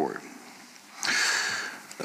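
A man breathing in through his nose close to a desk microphone, a hissy sniff of under a second, about a second in.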